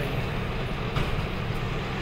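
Steady low rumble of city traffic in the background, with one faint click about halfway through.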